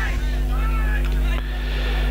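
A steady low hum, with faint distant voices of spectators calling out in the first second.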